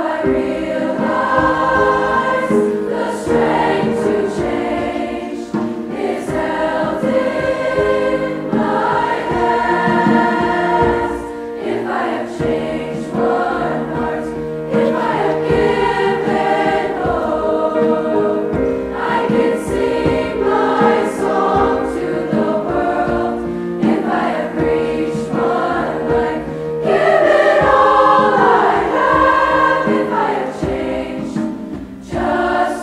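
A large combined SSA treble choir singing in parts, with a louder swell near the end.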